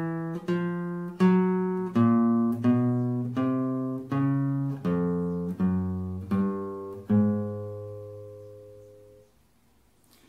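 Nylon-string classical guitar playing the 1-2-3-4 chromatic finger exercise: single notes plucked slowly, about one every three-quarters of a second, as fingers one to four fret adjacent frets in turn. The last note rings on and fades away near the end.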